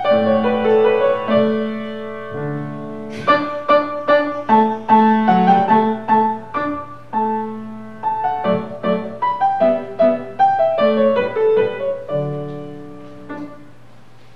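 Solo grand piano playing a flowing classical-style piece in phrases. The notes ring on between strikes, and the music eases off near the end.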